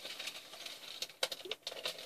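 Clear plastic packaging of a large printed hand fan crinkling and rustling as it is handled and held up, with scattered light clicks.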